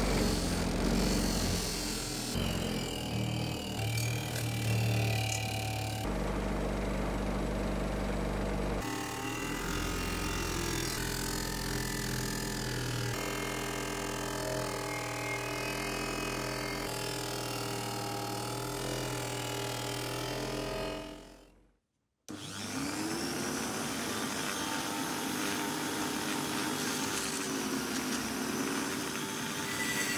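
Bench-mounted buffing wheel motor running steadily while brass blowtorch parts are pressed against the wheel, heard in several short clips. After a brief cut, a handheld rotary tool with a felt polishing bob spins up with a rising whine, then runs steadily as it polishes the brass tank top.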